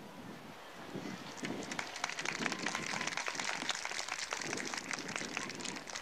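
An audience applauding, a patter of many claps that starts about a second in and eases off near the end.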